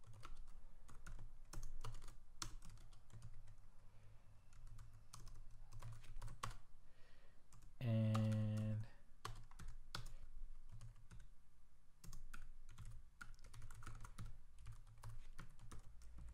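Computer keyboard typing in irregular runs of keystrokes as code is entered. About eight seconds in, a short hummed voice sound stands out above the typing.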